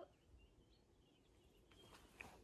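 Near silence: faint outdoor ambience with a couple of faint, high, short chirps.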